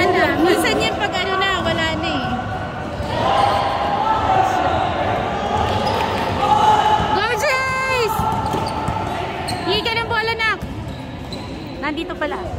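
Basketball game on an indoor court: sneakers squeak sharply on the gym floor in short clusters, in the first two seconds, around seven to eight seconds and around ten seconds, with indistinct voices of players and spectators echoing in the hall.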